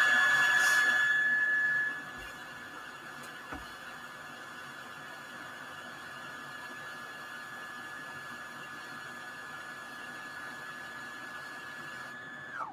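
Brother Project Runway CE1125 sewing machine's bobbin winder running, a steady high whine winding red thread onto the bobbin. The whine drops in level about two seconds in, and near the end it falls in pitch as the winder is stopped.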